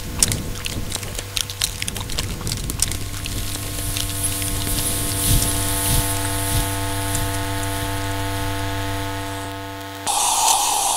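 Steady droning hum made of several held tones, with a run of crackling clicks over the first few seconds and a high hiss joining about three and a half seconds in, fading just before the end.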